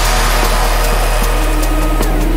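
Electronic dance music at a break in the beat: a steady, deep synth bass note held under faint sustained synth tones, with no drums.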